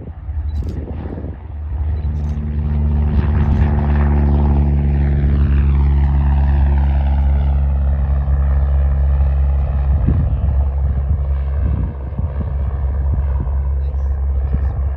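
Cessna 172R Skyhawk's four-cylinder piston engine and propeller at full takeoff power, growing louder about two seconds in as the plane lifts off and climbs past. A sweeping, falling whoosh rides over the steady engine drone as it passes overhead and climbs away.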